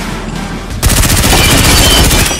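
A burst of fully automatic rifle fire: a rapid, steady stream of shots that starts suddenly about a second in and keeps going.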